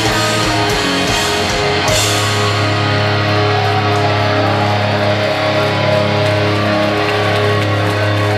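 Live metalcore band playing loud distorted guitars, bass and drums. About two seconds in, the drum hits thin out and the guitars and bass hold a sustained, ringing chord.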